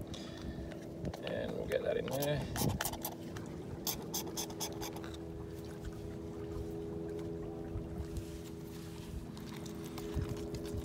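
Stirring stick clicking and tapping against a plastic mixing cup as catalyst is mixed into flow coat paste, in a quick run of taps; after that a steady low hum holds.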